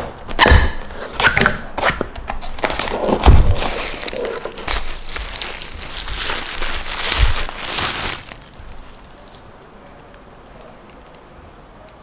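Unboxing: a cardboard box being opened and handled with knocks and scrapes, then plastic bag wrapping crinkling as it is pulled off, stopping about eight seconds in.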